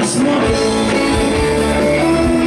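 Live rock band playing: electric guitars strumming over drums, with a bright crash right at the start.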